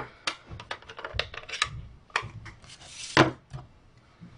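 A string of light plastic clicks and knocks as a stamp ink pad case is set down and opened, with a brief sliding rub about three seconds in.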